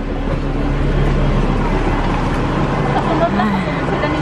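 A bus engine running steadily close by, a constant low hum, with faint voices in the background.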